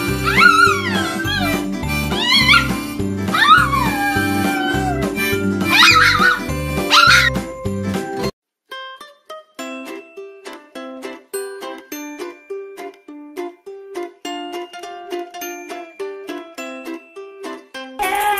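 A small dog howling along to a strummed acoustic guitar, its howls sliding up and down in pitch. About eight seconds in this cuts off suddenly and light plucked background music takes over.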